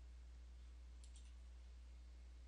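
Near silence with a steady low hum, and a quick run of three faint computer mouse button clicks about a second in.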